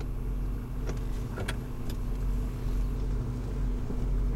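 Opel Kadett C 1204's four-cylinder engine idling steadily, heard from inside the cabin, with a couple of faint clicks about a second in.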